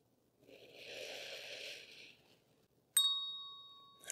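A single small bell chime struck once about three seconds in, ringing with a bright metallic tone that dies away within a second. It is the cue for the end of the held pose. Before it, about a second in, a faint soft hiss.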